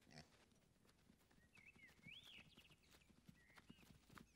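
Faint, irregular hoof falls of a small group of sheep walking on grass, with a few high, whistling chirps around the middle.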